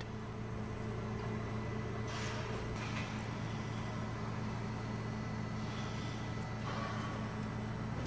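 Steady low machine hum, with faint soft noises about two seconds in and again near six seconds.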